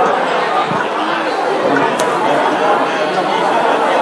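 Many guests chattering at once in a large hall, no single voice standing out, with one sharp click about halfway through.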